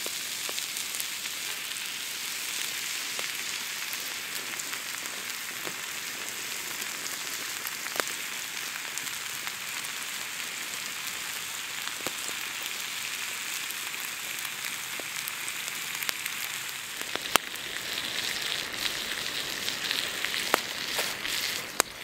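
Bacon rashers and beef burger patties sizzling on a hot stone slab over a wood fire: a steady hiss broken by a few sharp pops, growing a little louder in the last few seconds.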